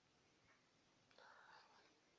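Near silence, with a brief faint murmur like a quiet voice a little past the middle.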